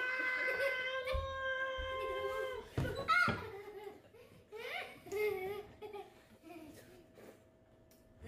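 A child's voice holding one long steady wail for about two and a half seconds. Then comes a short loud outburst and broken, wavering laughing vocal sounds, fading near the end.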